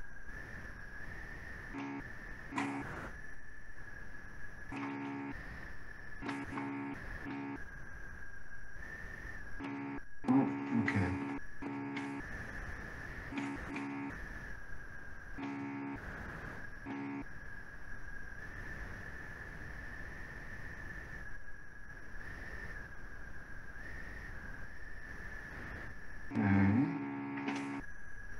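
Video-call line noise: a steady high-pitched electronic whine over a low hum, with a few brief, faint bits of murmured voice.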